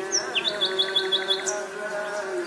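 A small bird chirping: a swooping note, then a quick run of about seven short high chirps lasting under a second, over steady background music.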